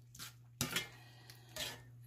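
Metal spoon scraping against a cast-iron skillet while stirring thick onion gravy: one clear scrape about half a second in and a softer one near the end, over a faint steady hum.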